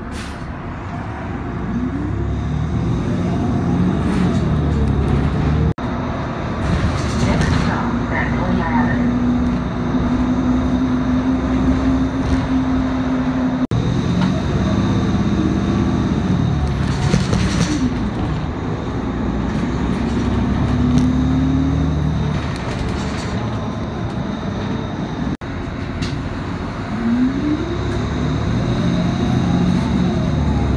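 City transit bus heard from inside the cabin while driving: engine and transmission whine rising in pitch as it pulls away and falling as it slows, several times over, with road rumble and a few short hisses.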